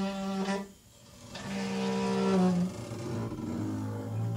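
Free-improvised duet of alto saxophone and acoustic bass: a short held note at the start, a brief pause about a second in, then a longer held note of about a second and a half before the playing thins out.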